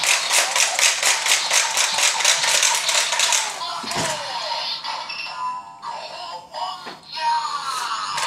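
A DonBlaster toy transformation gun loaded with a Sentai Gear plays its electronic transformation music and sound effects. A fast, even ticking beat fills roughly the first half, then a melodic passage runs to the end.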